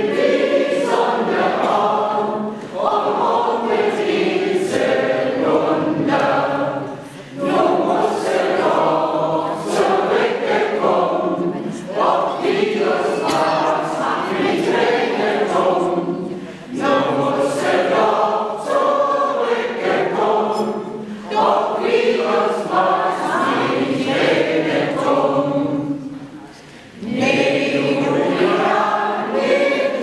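Mixed amateur choir of women and men singing a German dialect folk song. The singing comes in phrases with brief pauses between the lines.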